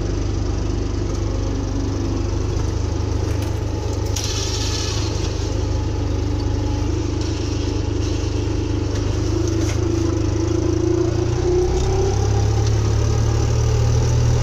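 Fendt tractor's engine running steadily under load while pulling a harrow, heard from inside the cab, with a whining tone that rises a little near the end as the engine note steps up. A brief hiss about four seconds in.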